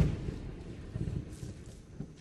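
Film soundtrack: a low rumble fading away after a loud hit, with a few faint crackles.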